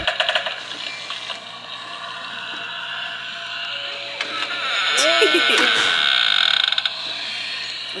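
A Halloween decoration shaped like a stack of spooky books, playing its sound effect through a small speaker. It is a high-pitched, wavering sound that swells and is loudest a little after halfway, with a brief voice-like groan about five seconds in.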